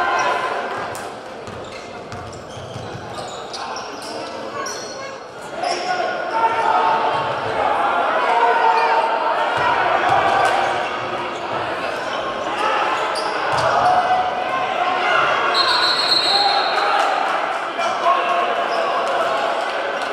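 Echoing gym sound of a basketball game in progress: a ball bouncing, brief sneaker squeaks and crowd chatter and shouts that swell about six seconds in. Just past the middle, a steady high whistle blast of about a second and a half stops play.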